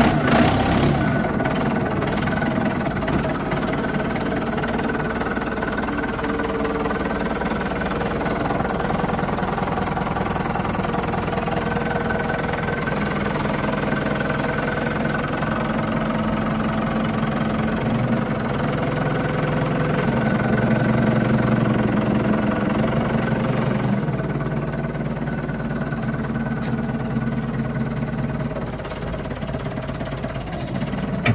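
Ford 755B backhoe-loader's engine running just after a cold start, its note shifting in pitch and loudness several times as the loader and backhoe are worked, loudest about two-thirds of the way through.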